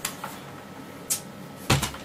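Handling noises from an airsoft AK-74M electric rifle: a click at the start, a brief rustle about a second in, and a couple of knocks near the end.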